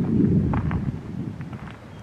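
Wind buffeting the camera's microphone: a low rumble, strongest in the first second and easing off toward the end.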